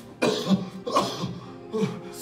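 Steady background music with four short, cough-like vocal bursts from a person.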